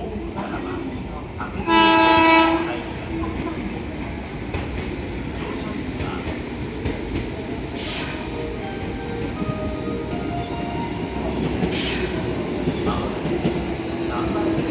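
A train horn sounds once for just under a second, about two seconds in. Then a JR Central 311 series electric train pulls into the platform: its running noise and rail clatter build as it arrives, with a whine from its motors changing pitch as it slows.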